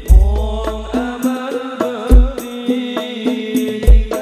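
Live sholawat devotional music: voices chanting an ornamented, gliding Arabic-style melody over a steady drone, with a percussion ensemble. Very deep booming drum strokes fall about every two seconds.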